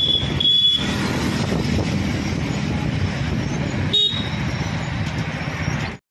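Road traffic noise heard from a moving vehicle, a steady low rumble of engines and tyres, with short high-pitched horn beeps twice at the start and once about four seconds in.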